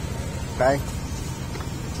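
Honda Vario 150 scooter's single-cylinder engine idling steadily, a low even rumble.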